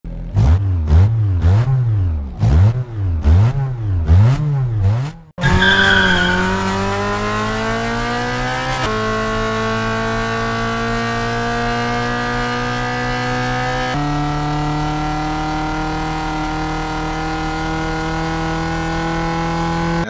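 A car engine revved up and down about seven times in quick succession, then a short tire squeal as the car launches. The engine note then climbs steadily and holds high and level at speed.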